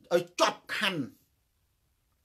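A man speaking Khmer in short phrases for about a second, then a pause with no sound.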